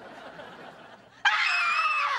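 Soft audience laughter, then about a second in a loud, long, high-pitched scream of alarm that drops in pitch as it ends.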